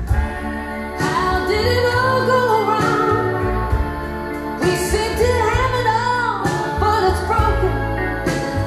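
Recorded music played through Focal Grand Utopia EM EVO floor-standing loudspeakers and picked up by a microphone in the listening room: a slow song with a gliding lead melody over repeated deep bass notes. The woofer output is set one step higher because the bass had sounded lacking.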